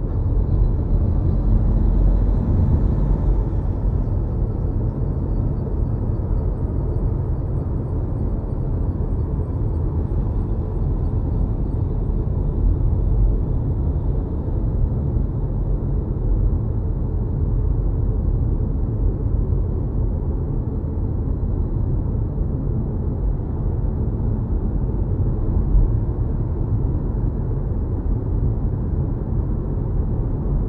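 Steady low road rumble and tyre noise heard inside an electric car's cabin at highway speed.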